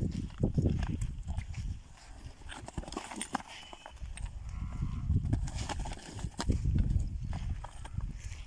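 Two desi bulls fighting on dry dirt: hooves stamping and scraping and heavy thumps as they shove head to head. It eases off for a couple of seconds in the middle, then picks up again.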